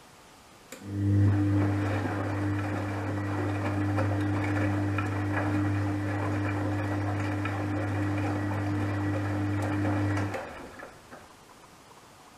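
Gorenje WA72145 front-loading washing machine turning its drum in a wash tumble: a steady motor hum with wet laundry tumbling, starting about a second in and stopping after roughly nine and a half seconds.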